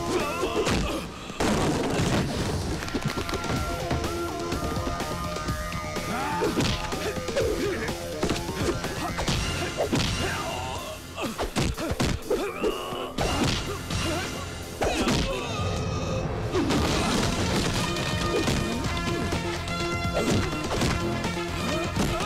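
Action-film fight soundtrack: background music with many punch and slap sound effects, thuds and crashes coming in quick succession throughout.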